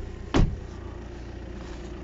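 A car door on a 2016 Volvo XC60 being shut, a single loud thud about half a second in, over a steady low hum.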